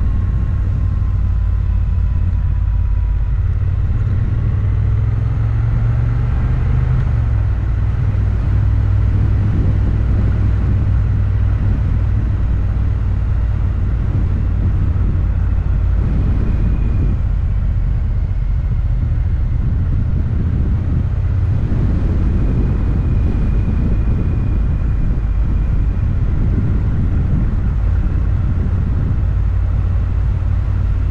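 Motorcycle riding at a steady cruise: an even, low engine drone mixed with wind noise on the bike-mounted microphone, with no revving or gear-change surges.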